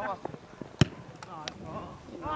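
A football struck once with a sharp thud a little under a second in, followed by a couple of fainter knocks.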